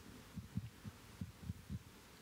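Faint, irregular low thumps, several a second, over quiet room tone.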